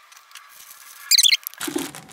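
Plastic zip-lock bags of cube stickers being handled, with faint rustling and one brief, high-pitched squeak a little over a second in.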